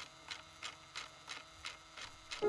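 Faint, even ticking, about three ticks a second, over a low steady hum.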